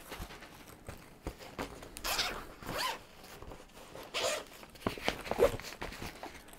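Zipper on a fabric compression packing cube being unzipped in several short pulls.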